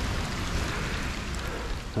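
Runoff water flowing out of a French drain's corrugated plastic outlet pipe after a heavy rain, heard as a steady rushing wash with a low wind rumble on the microphone.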